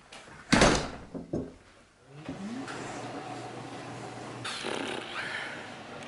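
A glass-panelled exterior door shutting with a loud thud about half a second in, followed by a smaller knock a second later. Then a steady low hum.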